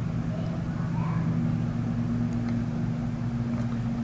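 Steady low electrical hum with hiss from the recording setup, unchanging throughout.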